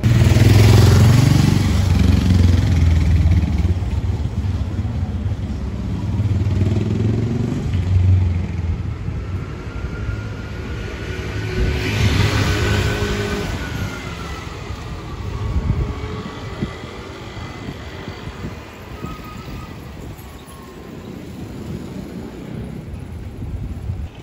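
City trams passing close by on street rails. A loud rumble of wheels and motors fills the first several seconds and swells again about halfway, while a high whine glides up and down in pitch through the middle before fading into lower street noise.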